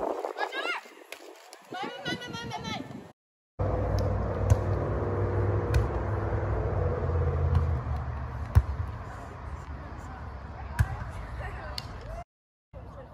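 Players' short, high-pitched shouts during a beach volleyball rally. Then, after a cut, a steady low rumble with a few sharp smacks of a volleyball being hit, spaced a second or more apart.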